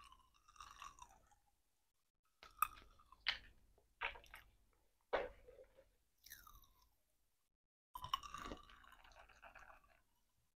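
Small plastic spray bottles and pump caps being handled: a handful of sharp clicks and knocks of plastic on plastic in the middle, and squeaking as the plastic is rubbed with a microfiber cloth near the start and again near the end.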